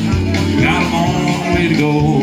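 Live country music on a pedal steel guitar played with a steel bar, with a man singing into the microphone.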